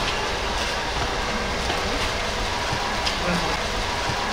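A steady background rumble and hiss with faint murmured voices.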